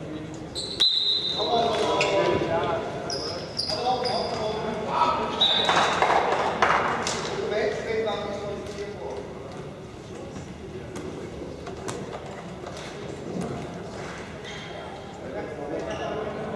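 Players' voices calling out across a large, echoing sports hall during a floorball game, loudest in the first half. Scattered sharp clicks of sticks striking the plastic ball run throughout.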